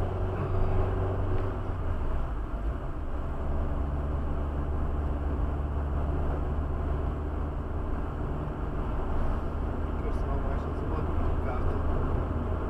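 Car interior noise while driving at about 70 km/h: a steady low engine hum under tyre and road noise. The engine note shifts slightly about two seconds in.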